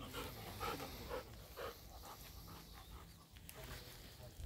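Golden retriever panting softly, a few quick breaths about half a second apart in the first two seconds, then fainter.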